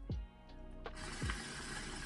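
Water bubbling and rushing in a bong as smoke is drawn through it, a dense noisy bout starting about a second in and lasting about a second and a half, over a background hip-hop beat with deep falling bass hits.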